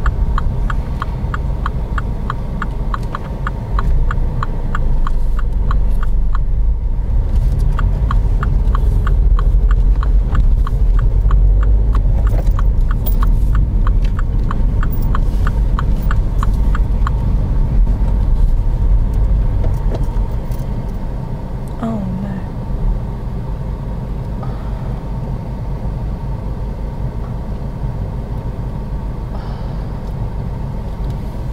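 Car engine and road noise inside the cabin, a steady low rumble that swells during the first half and eases off in the second. Over it, the turn-signal indicator ticks evenly, about three clicks a second, then stops about seventeen seconds in.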